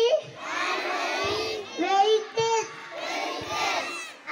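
A large group of young children chanting loudly in unison, in drawn-out sing-song phrases with short breaks between them.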